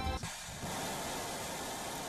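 Music cuts off just after the start. A steady rushing noise follows: a missile's rocket engine firing at launch.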